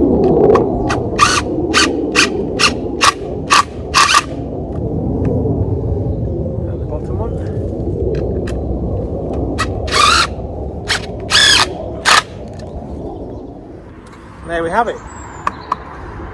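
Cordless drill driving a screw through a wooden bird box into a holly trunk in short trigger bursts: about two a second between one and four seconds in, then a few more between ten and twelve seconds. The screw is being left slightly proud so the tree can push the box out as it grows. A steady low rumble runs underneath.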